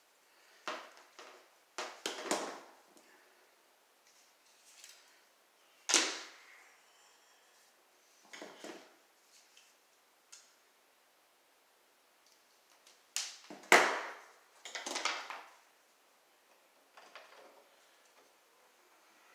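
Wire strippers cutting and stripping electrical cable to make pigtails: a series of sharp snips and clicks with rustling of the cable, the loudest about six seconds in and again near fourteen seconds.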